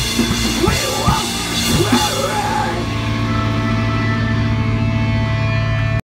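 Live rock band with drum kit and distorted electric guitars: drum hits for about two seconds, then the drums stop and the guitar and bass amplifiers ring on with a loud, steady sustained note as the song ends.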